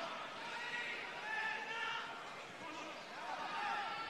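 Football stadium ambience: a faint murmur of crowd voices and distant shouts from the pitch, with no single loud event.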